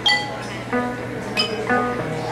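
Live band playing a sparse passage of separate ringing notes, about two a second, on xylophone and plucked violin with guitar.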